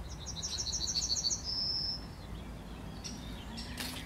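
Yellowhammer singing one full song phrase: a fast run of about eight repeated high notes, then one long drawn-out final note.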